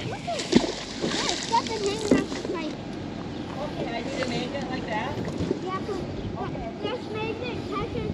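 A magnet-fishing magnet on its rope landing in river water with a splash about half a second in.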